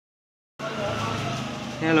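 A steady mechanical hum, a low drone with several held tones, starting about half a second in. A man's voice says 'Hello' near the end.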